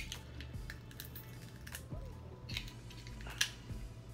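Snow crab leg shell cracking and snapping as it is broken apart by hand: several short sharp cracks spread over the seconds, with a louder one near the end.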